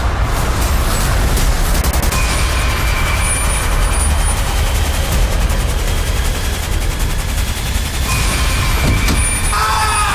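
A loud, steady low rumble under a dense rushing noise, with faint high tones over it. Near the end a voice begins to cry out.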